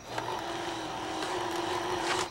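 Snack vending machine's motor humming steadily for about two seconds, starting just after the beginning and cutting off abruptly. Crickets chirp faintly in the background.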